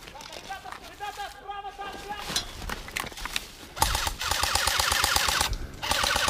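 Airsoft electric rifle firing full-auto: a rapid burst of clacks with a motor whine, about two seconds long, starting a little before the end, then a short second burst.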